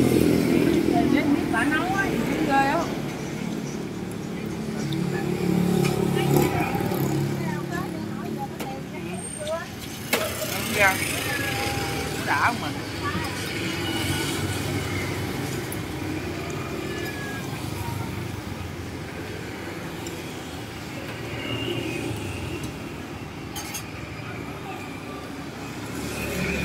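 Intermittent talking over steady background noise, with a few short clicks about halfway through.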